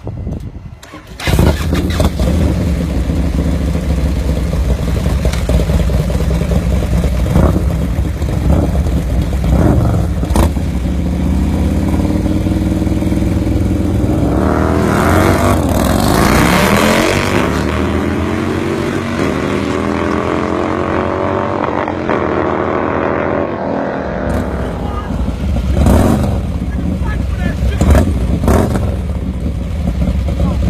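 Harley-Davidson bagger motorcycle engines, loud from about a second in, running and then revving hard in climbing and falling sweeps as the bikes launch and pull away.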